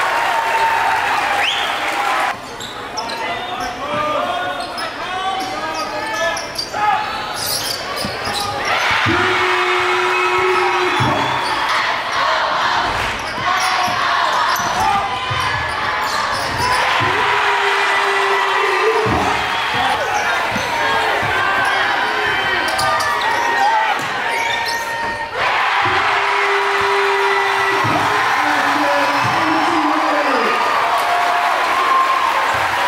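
Basketball game sounds in a gymnasium: a ball dribbling and bouncing on the hardwood under steady crowd noise and chatter, with a couple of abrupt cuts in the sound.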